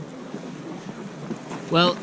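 Seaside outdoor ambience: an even hiss of wind on the microphone and the sea. A man starts talking near the end.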